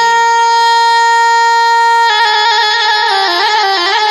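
Instrumental passage of Amazigh folk music: a melody instrument holds one long, bright note for about two seconds, then breaks into a quick, ornamented run of notes.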